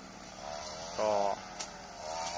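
A man's voice saying a few short words in Thai over a faint, steady outdoor background hiss, with a single small click about a second and a half in.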